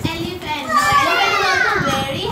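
Young children's voices shouting and chattering over one another, with one high voice sliding down in pitch in the second half.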